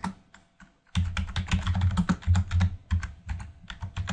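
Typing on a computer keyboard: after a brief pause, a quick, steady run of keystrokes starts about a second in.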